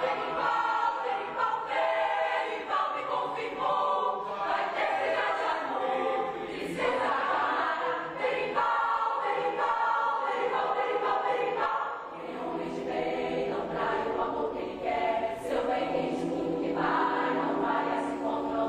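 A large mixed choir of men and women singing together on stage, moving from note to note, with a brief pause between phrases about two-thirds of the way through.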